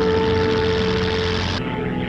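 Film score music with held notes over the steady drone of a light aircraft's propeller engine. The engine noise drops away suddenly near the end while the music carries on.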